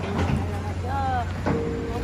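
Faint, indistinct voices over a steady low rumble, with one sharp knock about one and a half seconds in.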